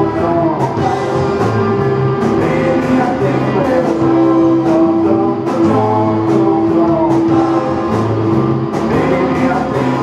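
Live rock band playing a song: electric guitars, bass, keyboard and drums, with a long held note sounding through the middle and over regular drum beats.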